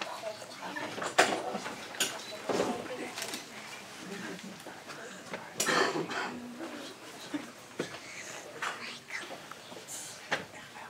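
Low murmuring voices with scattered knocks and clattering handling noises in a small room, the loudest knock about a second in; no violin is heard playing.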